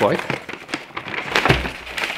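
Wrapping paper rustling and crackling as it is handled and lifted out of a cardboard box, with scattered sharp clicks and a dull thump about one and a half seconds in.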